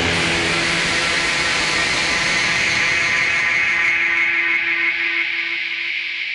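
Heavily distorted doom metal guitars hold a loud, noisy sustained chord that rings out with feedback-like noise. It thins slightly near the end as the song closes.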